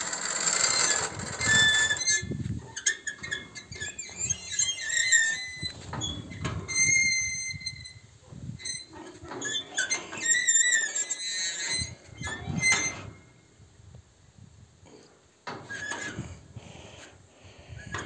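Intermittent high squeaks and squeals with knocks and clatter from a hand-hauled wooden ferry platform being pulled across the river by its steel cable and chain: the cable pulley and chain squeak while the wooden deck knocks against the boardwalk. It goes quieter for a couple of seconds after the middle.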